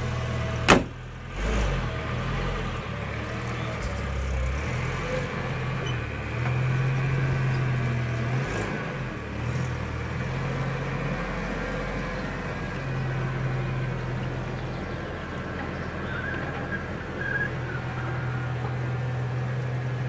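The driver's door of a UAZ 452 van is slammed shut with one loud bang under a second in, then the van's engine idles steadily with a low hum.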